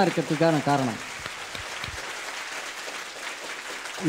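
Audience applauding, an even patter of clapping that lasts about three seconds after a man's voice stops about a second in.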